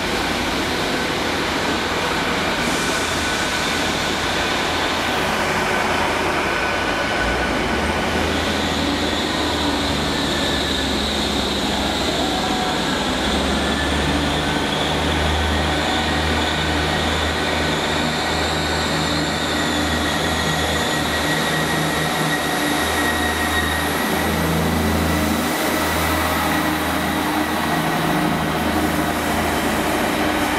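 GWR Hitachi Class 800 train moving slowly along the platform road: a steady rumble of wheels on rails, with a faint whine and a low engine hum that starts a few seconds in and comes and goes.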